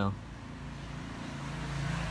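A motor vehicle going by, its engine hum and road noise growing steadily louder through the second half.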